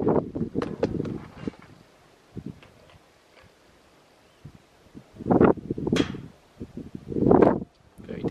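Wind gusting on the microphone: a rush of noise at the start, a few seconds of near quiet, then more gusts in the second half.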